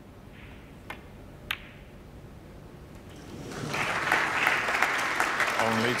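Two sharp clicks of snooker balls, a cue striking the cue ball and then the cue ball hitting the black, about a second and a second and a half in. From about three and a half seconds in, an arena audience applauds loudly as the black goes down.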